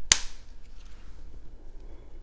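A perfume bottle's atomizer giving one quick spray onto a tester strip: a short, sharp burst right at the start, then quiet.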